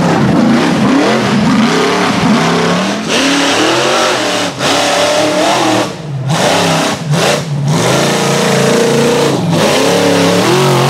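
Rock bouncer buggy engines revving hard and repeatedly as they power up a steep dirt hill climb, pitch swinging up and down with the throttle. The sound breaks off briefly several times, with short drops between clips.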